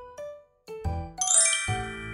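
A few short pitched notes, then about a second in a bright chime sound effect with a shimmer of high tones that rings on.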